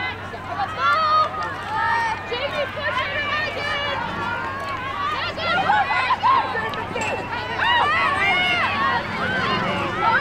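Overlapping shouts and calls from lacrosse players and sideline spectators, several high voices calling out across the field at once, none of it clear speech.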